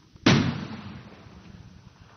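A single gunshot about a quarter second in, with a long echoing tail that fades away over about a second and a half.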